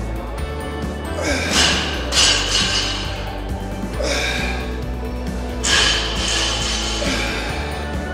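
Background music with a steady bass line, over which a man strains and exhales hard through a kettlebell windmill, with louder breathy grunts about one and a half seconds in, near two seconds, at four seconds and just before six seconds.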